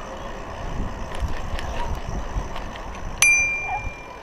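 A bicycle's handlebar bell rung once about three seconds in: a single bright ding that rings on briefly and fades. Under it is the steady wind and road noise of the moving bicycle.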